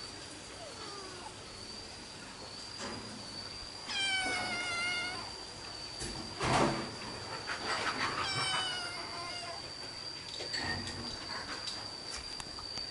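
Kittens play-fighting: one gives a long meow about four seconds in and another about eight seconds in, with scuffling and a thump between them.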